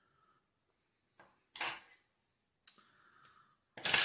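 Quiet room with a few light clicks and short rustles of hands handling fly-tying materials and the bobbin at the vise, including a brief noisy rustle about one and a half seconds in. A louder short rustle comes just before talk resumes at the end.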